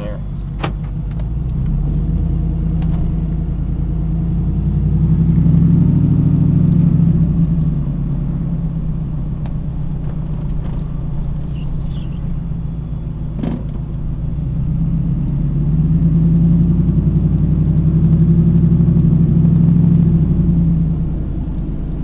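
Supercharged Ford F-150 Lightning's V8, heard from inside the cab while the truck is driven, swelling louder twice: a few seconds in, and again past the middle.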